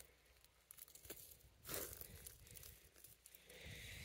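Near silence with a few faint crunches of footsteps on dry leaves and pine needles.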